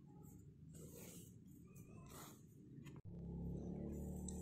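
Faint rustling of cotton yarn and crochet fabric as a yarn needle draws the thread through a hand-sewn seam, in several short swishes. About three seconds in there is a click, after which a low steady hum comes up.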